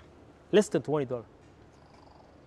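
A man speaking: one short spoken phrase about half a second in.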